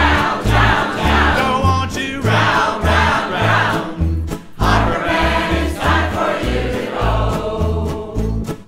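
Live folk song: a choir singing along with a strummed acoustic guitar, over an upright bass playing about two notes a second.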